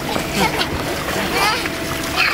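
Water splashing in the splash pool of an inflatable backyard water slide over a steady rushing noise, with children's high voices calling out, most clearly about a second and a half in.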